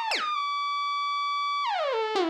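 Aphid DX FM software synthesizer sounding a single note rich in overtones. It drops quickly in pitch just after the start, holds steady, then glides down in pitch near the end.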